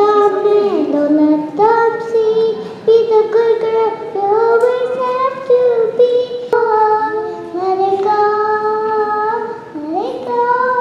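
A young girl singing into a handheld microphone, amplified through a small portable speaker. Her single voice holds long, steady notes in phrases, with short breaks between them.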